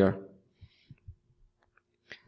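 The end of a spoken word, then a few faint, soft clicks from a computer mouse being used.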